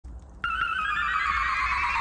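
A synthetic swelling tone starts about half a second in and widens as it is held, its lower edge sliding down in pitch, over a low hum.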